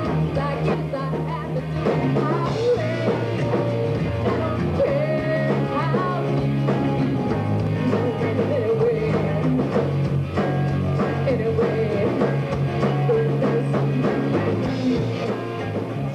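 Live rock band playing a song, with a woman singing lead over electric guitar, bass and drum kit.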